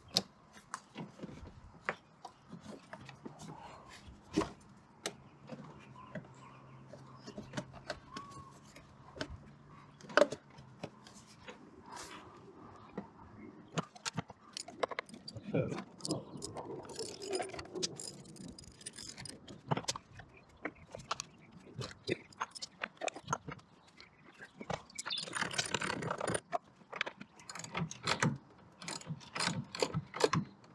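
Hand work on plastic air-intake ducting and its fittings in an engine bay: scattered clicks, taps and knocks of plastic and metal parts. Denser rattling stretches come in the second half, with ratchet clicking near the end.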